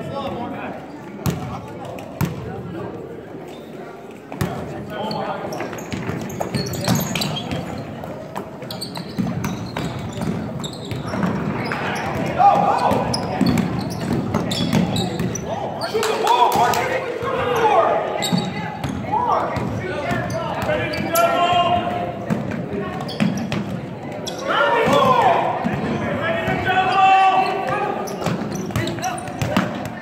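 A basketball bouncing on a hardwood gym floor, with a sharp knock now and then, under the echoing voices of players and spectators in the gym. The voices rise in two louder stretches, near the middle and again later on.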